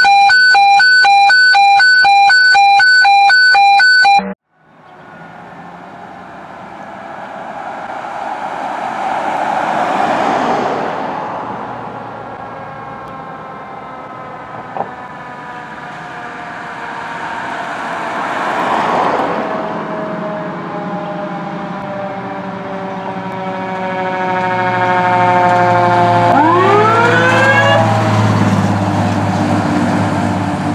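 A loud, steady electronic intro tone for about four seconds. Then a fire engine responding with its sirens: a wail rising and falling, slowly falling siren whines, and a fresh siren spin-up near the end, as the truck's engine rumble grows louder while it passes.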